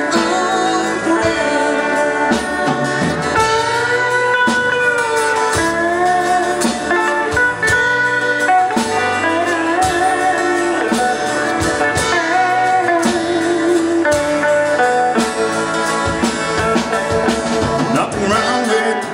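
Live country band playing a song: drums, electric and acoustic guitars and a pedal steel guitar, with a lead line that glides between notes.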